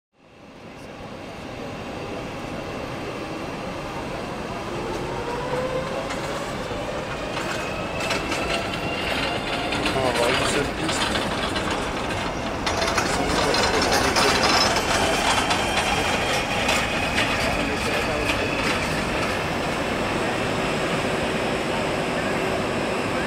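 Jet airliner engines running as the aircraft taxis: a steady rumble that grows slowly louder, with a faint rising turbine whine.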